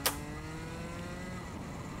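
A racing kart's two-stroke engine, heard faintly through the onboard camera, its pitch slowly rising as the kart accelerates out of a corner. A brief click sounds right at the start.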